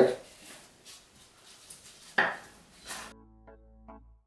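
Faint handling sounds and one sharp knock on a wooden cutting board about two seconds in, then soft keyboard music begins about three seconds in.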